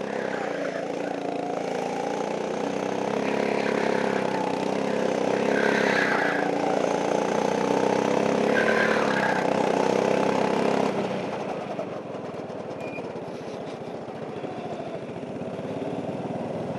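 Go-kart engine running hard, its pitch rising and falling through the corners. About eleven seconds in it drops off to quieter, lower running as the kart slows.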